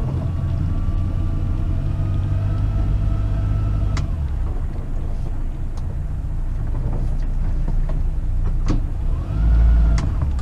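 Steady low engine rumble with a thin whine that rises slowly over the first four seconds and then stops, a few sharp clicks, and a louder low surge near the end. The noise does not come from the sailboat itself.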